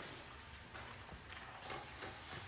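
A few faint light taps and rustles in a quiet room, from paper sheets handled at a lectern and people moving about.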